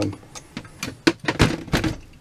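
A string of light metallic clicks and knocks as a Holley 1904 one-barrel carburetor is handled and turned over on a steel workbench, with a couple of heavier knocks in the second half.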